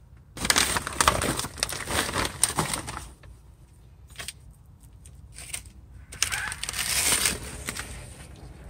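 Rustling and crinkling of paper, plastic and foil debris being disturbed, in two spells: one starting about half a second in and lasting over two seconds, another around six seconds in, with sharp clicks through both and a few lone clicks between.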